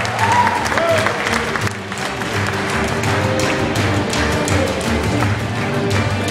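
Live acoustic ensemble music played by street performers: sustained melodic notes over a steady bass line, with audience clapping mixed in.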